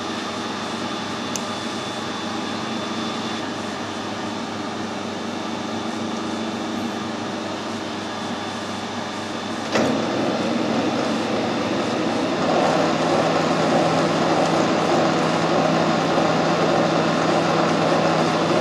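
Metal lathe running while screw-cutting a 1.75 mm pitch thread in a mild steel shaft, a steady motor and gear hum. A click comes about ten seconds in, after which the running is louder, and a further low hum joins a couple of seconds later.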